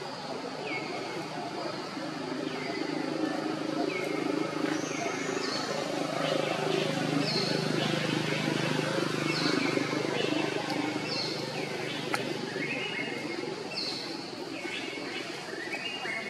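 Outdoor ambience: a bird gives short falling chirps over and over, roughly once a second, while a low murmur of voices swells through the middle and fades near the end.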